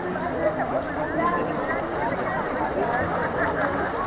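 Several voices talking and calling out over one another, with no single clear speaker.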